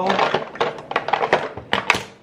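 Makeup products clattering and knocking against a clear plastic container as they are pushed and packed into it: a rapid, irregular run of sharp clicks and knocks.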